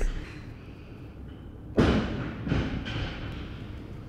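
Plastic drink bottle being opened by hand: a sudden loud click about two seconds in as the cap gives, then a couple of softer plastic clicks.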